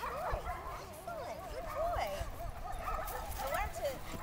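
German shepherd whining with a high, wavering pitch, broken by a few short yips, during Schutzhund bite-sleeve work.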